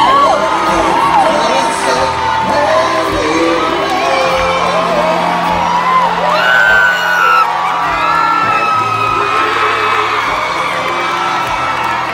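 Live band holding steady chords while a concert audience cheers and whoops, many voices overlapping.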